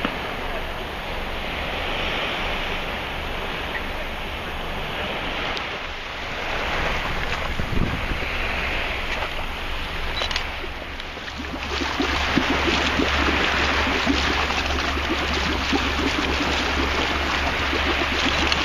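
Wind on the microphone over the wash of sea waves around a small boat, with a boat engine's low steady hum that grows louder about twelve seconds in.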